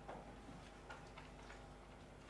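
Quiet room tone with a steady low hum and a few faint, irregular light clicks and taps.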